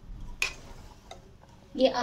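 A metal slotted spoon clinks sharply once against a stainless steel pan of milk, with a fainter tap about a second later.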